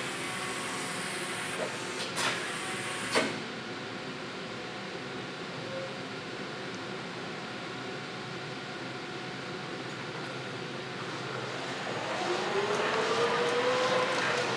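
Caterpillar EP25KPAC electric forklift lowering its mast: a high hydraulic hiss with a few knocks that cuts off with a knock about three seconds in, then a steady hum. Near the end the AC drive motor's whine rises in pitch and grows louder as the truck moves off.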